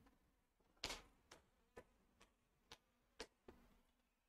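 A series of faint, sharp taps on a hard tennis court, about two a second; the first, about a second in, is the loudest and rings on briefly.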